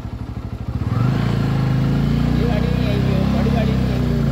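Motorcycle engine heard from the rider's seat, first running at low revs with evenly spaced firing pulses, then about a second in opening up and pulling harder with a louder, steady engine note and wind noise as the bike rides on.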